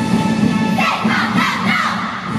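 A squad of cheerleaders shouting a cheer together, starting just under a second in, over backing music that thins out as they shout.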